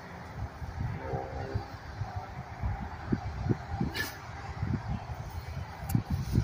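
Packing a backpack by hand: rustling of plastic bags and clothing, with wind buffeting the microphone. A faint short honk sounds about a second in, and a sharp click about four seconds in.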